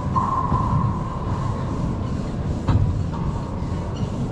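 Racquetball play on a hardwood court: high sneaker squeaks in the first second as a player lunges for a low shot, then one sharp ball strike a little under three seconds in, over a steady low rumble.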